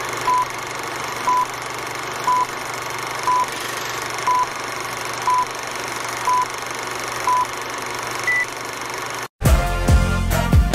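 Film-leader countdown sound effect: a short beep once a second, eight times, then one higher-pitched beep, over a steady old-film hiss. Near the end it cuts off and music with a beat starts.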